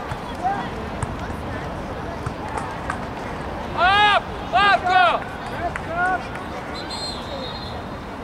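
People shouting across an outdoor soccer field during play: three loud, rising-and-falling calls about four to five seconds in, with softer shouts around them. A short, high whistle blast sounds near the end.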